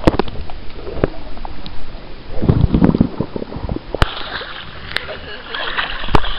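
Swimming-pool water heard from a camera held underwater: muffled sloshing and bubbling with sharp knocks. About four seconds in it turns to brighter splashing as the camera comes up to the surface.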